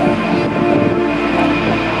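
Boeing 747-400's four jet engines running at takeoff thrust during the takeoff roll, a loud steady rumble with steady tones running through it.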